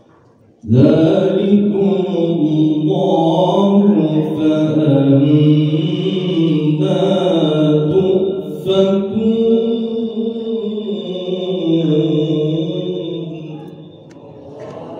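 A man reciting the Qur'an in the melodic tilawah style, amplified through a microphone and loudspeakers. Long, held, ornamented phrases start just under a second in, with a brief breath about two-thirds through, and trail off near the end.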